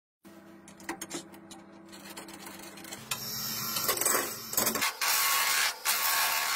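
A lathe motor running with a steady hum, then from about three seconds in a hand-held turning tool cutting into the spinning wooden blank, a scraping hiss that grows louder toward the end.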